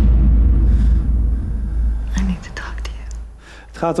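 Film-clip soundtrack played over the room's speakers: a loud, deep rumble that weakens after about two seconds, with quiet whispering over it. The clip sound cuts off just before the end, as a man starts speaking.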